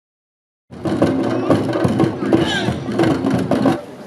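Silence for under a second, then a Marquesan dance troupe performing: drummers beating tall wooden drums, with men's voices calling over them.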